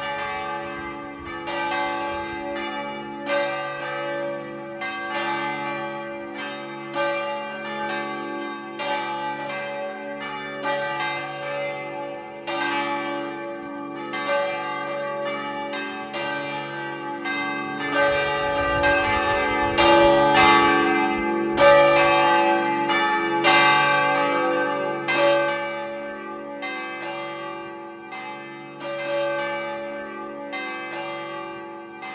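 Church bells pealing: bells of several pitches struck one after another, each left ringing under the next, growing loudest about two-thirds of the way through.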